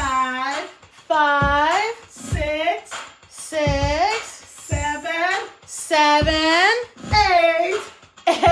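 Speech only: slow counting aloud, one drawn-out number about every second, in a high, sing-song voice.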